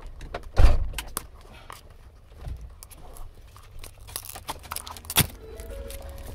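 Plastic toy packaging being handled and pried open by hand: scattered clicks and crinkles, with a loud thump about half a second in and a sharp snap near the end.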